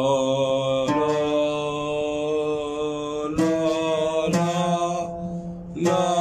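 A man singing long held notes on an open vowel, a breath-control exercise in Arabic singing. He steps to a new pitch about a second in and twice more past the middle, each change starting sharply, and the note fades just before the end.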